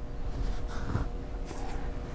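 Quiet room tone with a low rumble and a faint steady hum, broken by two soft, brief rustles about one second and one and a half seconds in.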